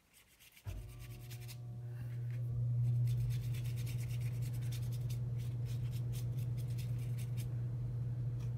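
Fingers rubbing wet acrylic ink into a collaged paper journal page, a run of quick rubbing strokes, blending the paint. Under it a steady low hum starts suddenly about a second in and runs on.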